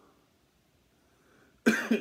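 A man's cough, sudden and loud, breaking a near-silent stretch about one and a half seconds in. It is set off by the Carolina Reaper and capsaicin-spiked cola he has just drunk.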